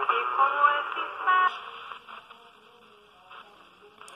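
A shortwave AM music broadcast with singing, played through the small speaker of a Motobras Dunga VII pocket radio tuned to the 49-metre band. The sound is thin with no high treble, and about halfway through it falls to a faint level.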